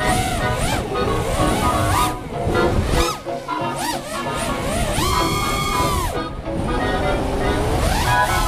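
Whine of a 5-inch FPV racing quadcopter's motors and three-blade props (ImpulseRC Alien on Lumenier 2206 motors), heard from the onboard camera. The pitch surges up and down as the throttle is punched and cut through power loops around trees, with one long rise, hold and fall past the middle. Music plays under it.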